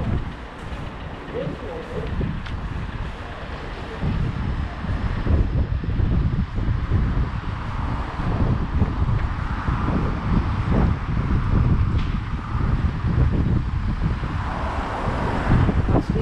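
Wind buffeting the microphone outdoors, an irregular low rumble that gets stronger about four seconds in, over faint road traffic.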